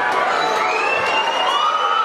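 Crowd cheering and screaming, with long high yells held over the din of many voices, one of them rising in pitch about half a second in.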